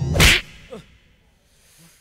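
A sharp whoosh sound effect, one swift swish about a quarter second in, followed by a short falling tone as the sound dies away.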